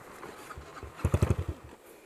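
Dirt bike engine running at low revs: a short run of quick, even firing pulses about a second in, over a rough background hiss.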